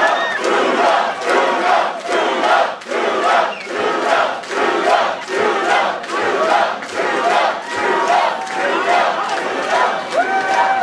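Large crowd in a hall cheering and chanting in a steady rhythm, about two shouts a second.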